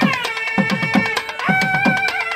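Nadaswaram ensemble: two nadaswaram double-reed pipes play a nasal melody that slides down at the start and moves to a new held note about one and a half seconds in, over quick strokes on thavil barrel drums.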